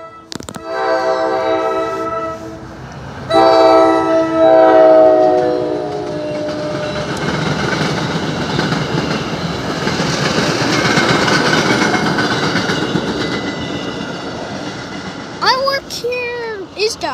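New Jersey Transit passenger train sounding its multi-tone horn in two blasts, the second longer and dropping in pitch at its end, followed by the steady noise of the coaches' wheels on the rails as the train passes.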